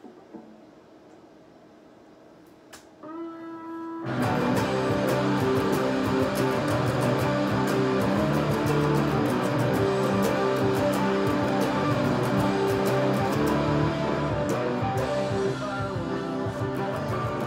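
A solid-body electric guitar. After about three quiet seconds a single note rings out, and about a second later a loud, dense riff starts, strongly picked, and keeps going.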